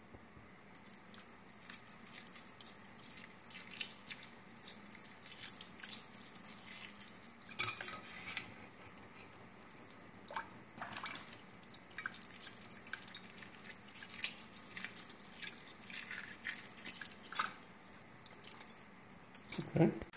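A thin stream of tap water trickling into a steel bowl in a sink while hard-boiled eggs are peeled, with many small, sharp crackles and clicks of eggshell breaking off.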